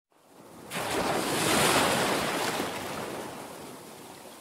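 A rush of surf-like noise, like a wave breaking, that comes in sharply under a second in, swells and then fades away slowly.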